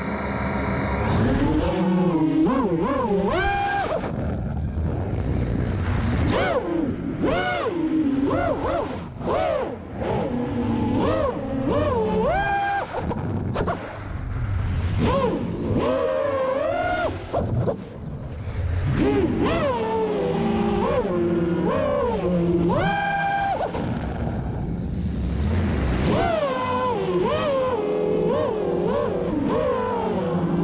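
Six-inch FPV quadcopter's F80 2200KV brushless motors and propellers whining as it takes off and flies. The sound throttles up suddenly at the start, then the pitch keeps rising and falling with the throttle, with a few brief dips in loudness midway. It is heard from the quad's onboard camera.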